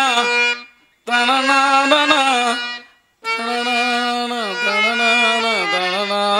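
A man singing a Carnatic-style stage song with harmonium accompaniment, in three phrases broken by short silences about a second and three seconds in.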